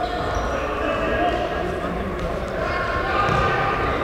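Indoor futsal play in a sports hall: the ball is kicked and bounces on the wooden gym floor, with a couple of sharp knocks about halfway through. Players' voices and calls echo in the hall throughout.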